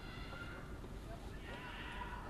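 Faint stadium ambience with distant, wavering shouts from voices on the pitch or in the stands.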